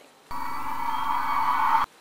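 A short sound with several steady held tones, cut in abruptly and cut off after about a second and a half, as an edited-in sound clip.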